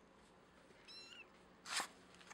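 A calico kitten held by the scruff of its neck gives one short, high mew about a second in, rising at its end, followed near the end by a brief, louder rasping burst.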